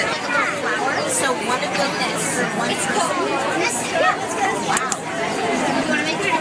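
Several people talking at once: a steady babble of overlapping voices, none of them clear.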